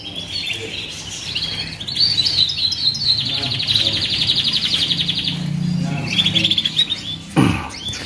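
Many caged canaries singing at once: a dense chorus of chirps and warbles, with one fast rolling trill from about three to five and a half seconds in.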